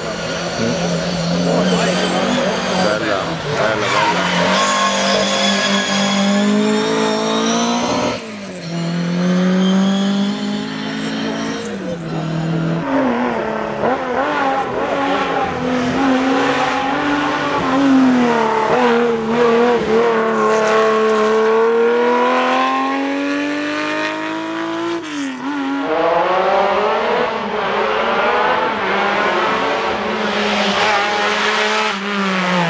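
Historic rally car engine revving hard up a hillside stage, its pitch repeatedly climbing and dropping with gear changes and lifts for the hairpins, with sharp drops about eight and thirteen seconds in.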